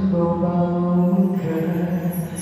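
A man singing long held notes into a microphone over a backing track, changing to a new note a little past halfway.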